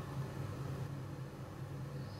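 Steady low hum under a faint even hiss: indoor room tone with no distinct event.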